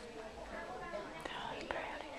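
Two women whispering quietly to each other, with a sharp click about three-quarters of the way through.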